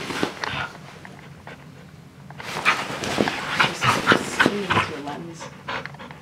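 Small terrier-type dog vocalizing with whines and grumbles, with a short burst at the start and a busier stretch from about two to five seconds in.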